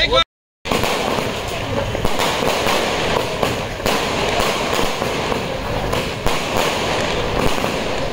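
Fireworks going off: a dense, continuous crackle of many small bursts with sharper pops scattered through it, after a brief dropout to silence near the start.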